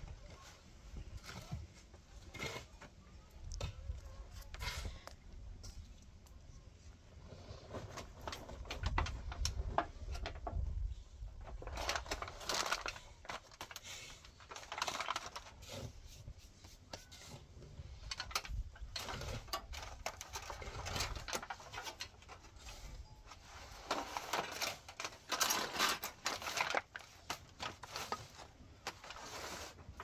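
Aluminium foil crinkling and rustling as it is folded by hand around a fish, in repeated crackly bursts that come thicker and louder in the second half.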